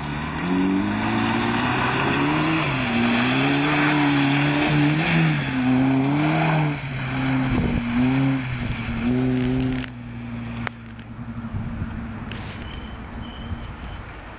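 Volvo 740's engine revving up and down as the car is driven hard over slush and mud, its pitch rising and falling again and again. After about ten seconds it drops to a quieter, steady drone.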